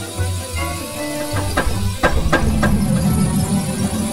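Rows of toy dominoes clattering as they topple, with a few louder knocks between about one and a half and three seconds in, over cheerful background music.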